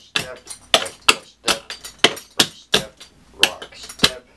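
Clogging shoes tapping on a plywood floor as a dancer works through the clogging triple rock step: a quick, uneven run of sharp clicks, about five a second.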